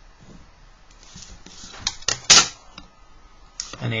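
A pencil drawing along a plastic set square on paper, followed by a few clicks and one sharp tap a little over two seconds in as the set square is shifted and set down on the drawing board.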